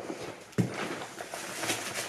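Handling noise from groceries: a soft knock about half a second in, then the rustle of plastic packaging being handled.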